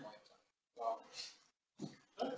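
Faint short bursts of a person's voice, three brief utterances with pauses between, off-microphone.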